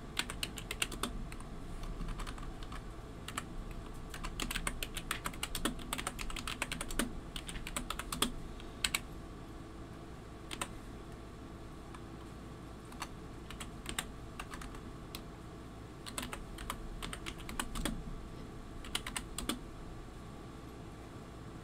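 Typing on a computer keyboard in uneven runs of key clicks with pauses between, the longest run a few seconds in and another near the end, over a steady air-conditioner hum.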